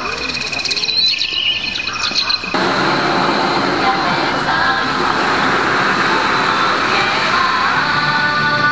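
Show soundtrack from loudspeakers: a jungle-like soundscape of bird and insect chirps over a steady high whistling tone, which cuts off abruptly about two and a half seconds in and gives way to a dense, steady wash of sound.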